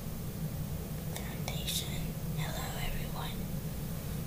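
A person whispering briefly, twice, over a steady low hum.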